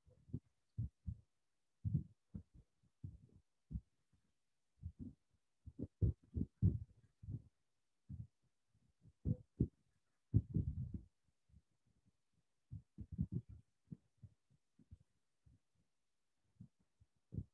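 Irregular soft, dull thumps and bumps, several a second in clusters, with a longer, louder rumbling bump about ten seconds in.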